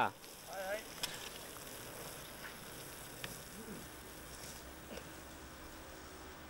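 Faint steady hiss, with a few faint distant voices and a couple of light clicks.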